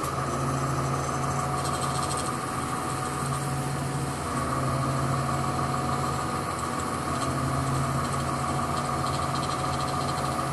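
Mobile crane's engine idling steadily, heard from inside the operator's cab as an even, unbroken hum.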